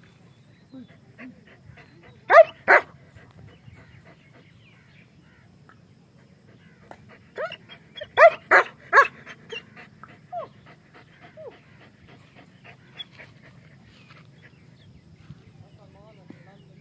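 German Shepherd barking: two barks close together, then a burst of four or five louder barks a few seconds later, followed by a couple of quieter ones.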